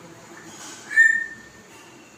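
African grey parrot giving one short whistle on a steady pitch, about a second in.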